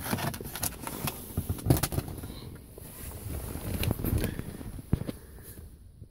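Handling noise from a clear plastic blister pack: scattered clicks and rustles as it is moved, quieter for the last second or so.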